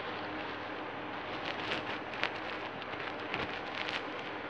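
Plastic Lego bricks handled and pressed together close to the microphone: scattered light clicks and rubbing over a faint steady hiss, the clicks coming more often in the second half.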